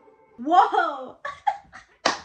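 A woman laughing: one longer laugh followed by three short bursts.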